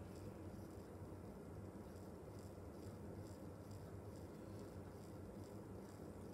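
Quiet room tone: a low steady hum with faint, evenly spaced high ticks about twice a second.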